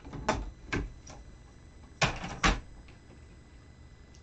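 Hard plastic clacks and knocks as a Stamparatus stamp-positioning tool is handled and set aside on the desk: three light clicks in the first second, then two loud knocks about half a second apart near the middle.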